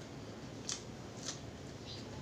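Chewing crispy fried boneless milkfish (daing na bangus): two short, sharp crunches about half a second apart.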